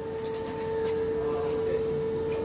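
Steady hum of a running pulp egg tray moulding machine: a constant mid-pitched tone over an even layer of machine noise, with a few faint ticks.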